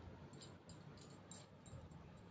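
Faint rustling and light ticks of a small piece of shiny cloth being handled and turned over in the hands, several short rustles across the two seconds.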